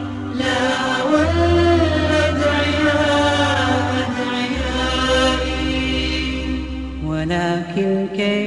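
Arabic Islamic nasheed: wordless chanted vocals in harmony over a held low drone that shifts to a new pitch about a second in, again midway, and again near the end.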